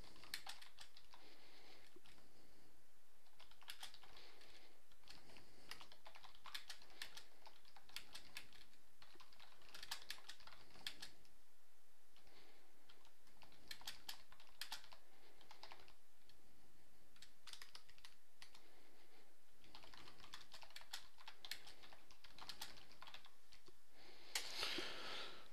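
Computer keyboard being typed on in short bursts of keystrokes, with brief pauses between the bursts.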